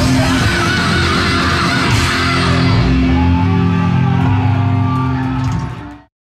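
Heavy metal band playing live in a hall, with distorted electric guitars, bass and drums. About halfway the bright cymbal wash thins out, leaving held chords that fade out quickly at the very end.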